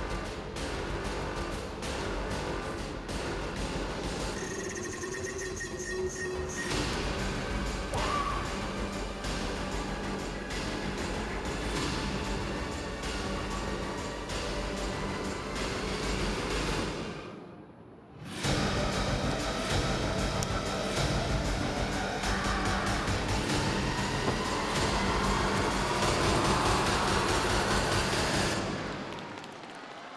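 Music for a freestyle taekwondo poomsae routine, with a regular beat; it drops out briefly a little past halfway, comes back louder, and fades out near the end.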